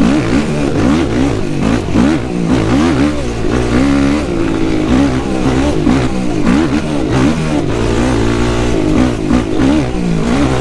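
Yamaha YFZ450R's single-cylinder four-stroke engine being ridden hard on and off the throttle, its pitch rising and falling again and again; the engine is new and being broken in.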